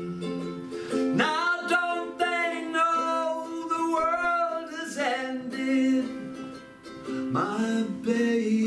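A man sings with a strummed ukulele. About a second in he holds one long, slightly wavering note for roughly four seconds. A new sung phrase begins near the end.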